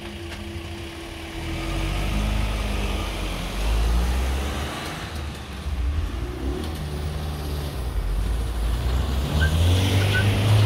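Road vehicles, a van and cars, driving across the level crossing as traffic moves again after the barriers lift. A steady hum fades in the first second and a half, then engine rumble builds, loudest around four seconds in and again near the end.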